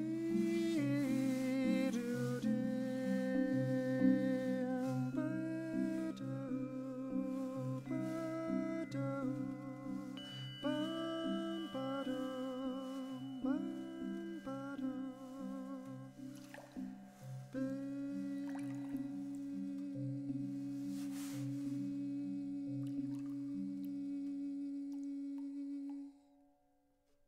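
Marimba playing soft rolled chords under a wordless hummed melody with vibrato. About two-thirds of the way through, the humming settles on one long held note over the marimba until the end.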